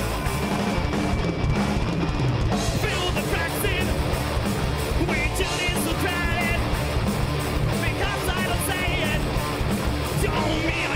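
Live heavy metal band playing loud and steady: electric guitars, bass and drum kit, with a lead vocalist singing over them from about three seconds in.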